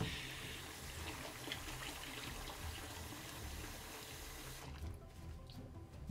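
Hot tap water running steadily into a sink basin half full of soapy water, stopping near the end.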